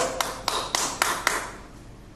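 About six sharp hand claps in quick succession, a little over a second in all, with a short echo after each.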